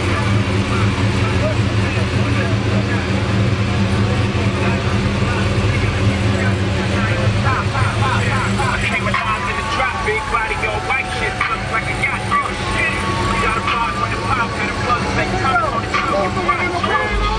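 Engine of a ProCharger-supercharged 1967 Pontiac LeMans idling steadily, with people talking over it from about eight seconds in.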